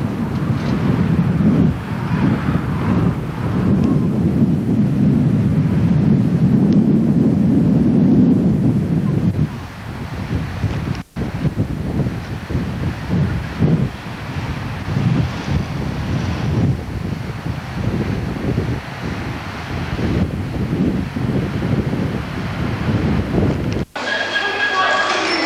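Wind buffeting the camcorder's microphone: a loud, gusty low rumble that eases somewhat after about nine seconds and cuts out for an instant about eleven seconds in.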